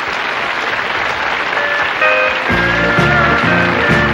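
Studio audience applauding. About two and a half seconds in, a country band starts playing over the clapping, with bass notes in a steady beat.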